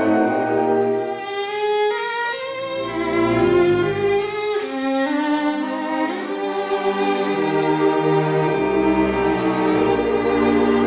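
Solo violin playing a melodic line, its notes changing every second or so, over a string orchestra accompaniment.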